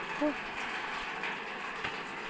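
Water pump running with water rushing through the line, a steady even noise, now pumping again with its clogged strainer and filter cleared. A single faint click comes near the end.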